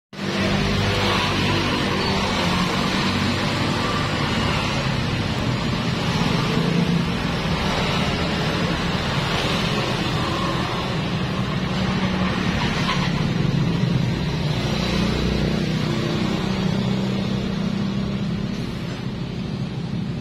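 Honda Vario scooter engine running steadily at idle, with a steady hiss of street and wind noise over it.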